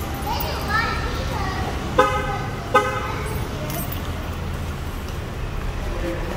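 A car horn gives two short chirps about three-quarters of a second apart, over a low steady hum in the parking garage.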